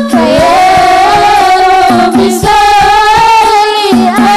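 A woman sings an Islamic devotional sholawat into a microphone in long held notes, backed by a hadroh ensemble of rebana frame drums beating a steady rhythm beneath.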